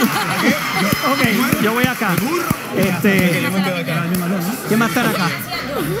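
Several people talking over one another at once, unclear cross-talk.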